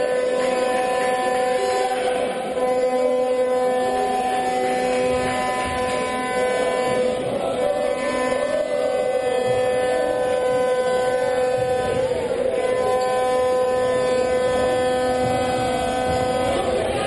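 A steady pitched drone, held with short breaks about 2.5, 6.5 and 12 seconds in, over general crowd noise in an indoor sports arena.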